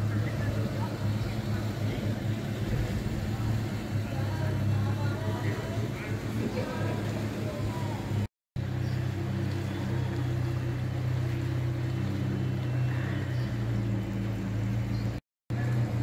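Small 4x4 SUV's engine running steadily at low revs as it creeps through deep floodwater.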